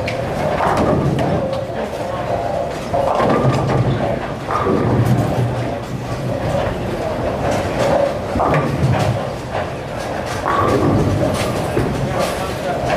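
Bowling alley in play: balls rolling down the lanes and pins being struck, with repeated clattering knocks, under constant background chatter.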